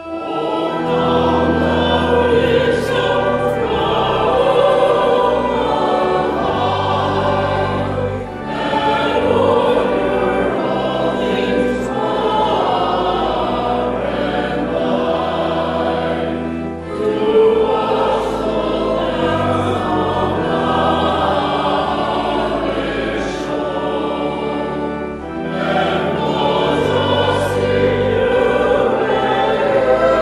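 Small mixed choir of six voices singing a hymn in unison phrases over sustained organ accompaniment, with a short breath break between lines about every eight seconds.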